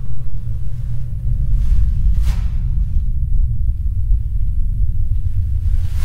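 Wind blowing, a deep steady rumble, with a brief whoosh about two seconds in.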